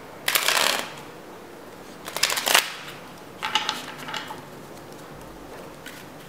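A deck of playing cards being shuffled and handled by hand, in three short bursts of card noise within the first four seconds.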